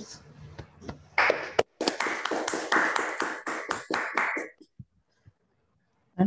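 Hand clapping through a video-call connection, thanking the lecturer. It starts about a second in as a quick run of claps, lasts about three and a half seconds, then stops suddenly.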